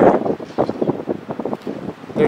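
Wind buffeting the camera's microphone in uneven gusts.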